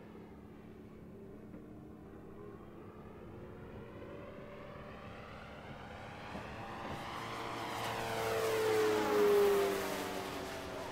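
Electric motor and propeller of a Legend Hobby 86-inch A-1 Skyraider RC model on a low pass: a steady hum that grows louder as it approaches, is loudest about nine seconds in as it passes close by, and drops slightly in pitch as it goes past.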